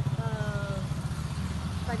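A motor vehicle engine idling nearby, a steady low rapid pulsing.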